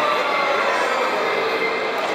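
Steady running noise of a carousel turning, an even rumble and whir with faint, indistinct voices in it.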